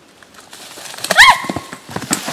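Scuffling of feet in dry leaves, then a woman's short, high scream about a second in that rises and falls and trails off in a brief held note.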